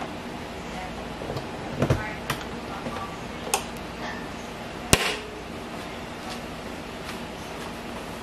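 Light knocks and clicks of an electric panini press being closed by hand: a low thump about two seconds in, a few small clicks, then one sharp click about five seconds in, the loudest sound, as the lid's handle clip is snapped shut. Steady background noise runs underneath.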